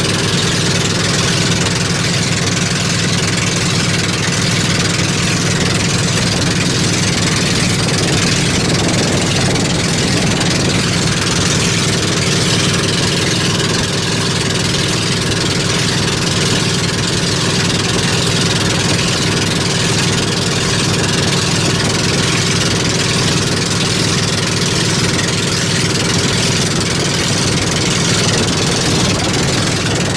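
Gasoline engine of a motorised outrigger boat (bangka) running steadily under way, with a steady hiss of water and wind over it.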